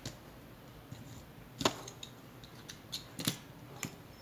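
Hands handling an embroidery canvas and thread at a table: about five short, sharp clicks and rustles, the loudest about a second and a half in and again about three seconds in.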